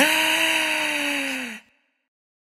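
A man's long, breathy, drawn-out "aaah": one held vocal tone sinking slightly in pitch, cut off abruptly about one and a half seconds in.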